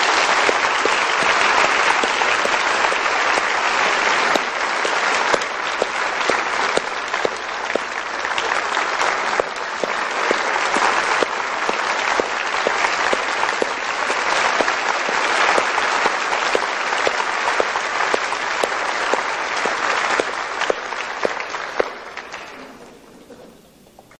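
Audience applauding: many hands clapping steadily, fading away near the end.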